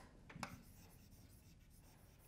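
Chalk writing on a blackboard: faint strokes and taps, with a brief tap about half a second in.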